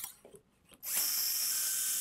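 Powered surgical drill starting up about a second in and running steadily with a high-pitched whir, drilling the bone socket for a 1.8 mm all-suture anchor at the joint's articular margin.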